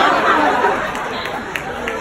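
Audience chatter after a punchline: many voices overlapping at once, dying down over the second half.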